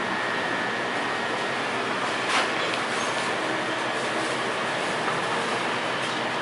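Steady background noise of a small open-fronted eatery, with one brief knock about two seconds in.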